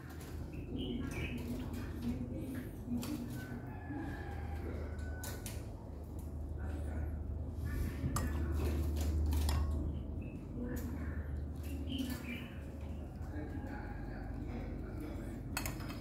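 A metal ladle clinking against porcelain bowls as blood is ladled out into small bowls, with scattered sharp clinks over a steady low hum.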